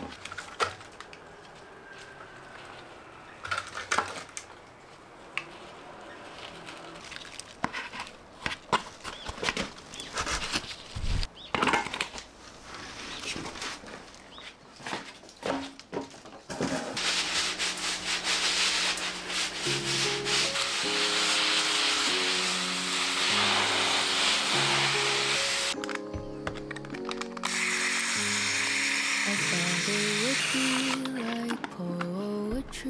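Scattered light knocks, clicks and rubbing as flower pots and planters are handled, for about the first half. After that, soft background music takes over, with a steady hiss beneath it.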